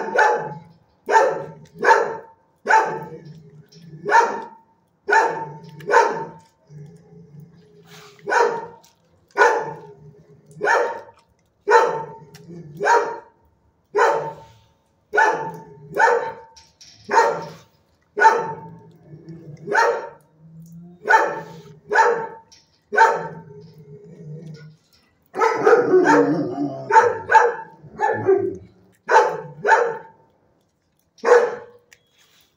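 A dog barking over and over, about one bark a second, with a short pause a quarter of the way in and a busier run of overlapping barks near the end.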